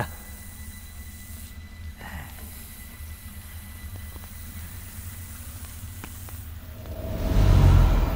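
A low, steady, ominous drone from a film soundtrack, with a faint hiss over it, swelling into a loud deep rumble about seven seconds in.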